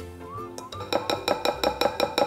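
Metal mesh sieve knocked against the rim of a glass mixing bowl as dry flour and cocoa are sifted through it: a fast run of ringing clinks, about six a second, starting about a second in.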